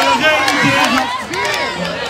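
Dakka Marrakchia troupe: many men's voices shouting and chanting together, with a few sharp percussive strikes among them.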